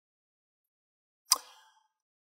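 Near silence broken about two-thirds of the way in by a single sharp click with a brief fading tail.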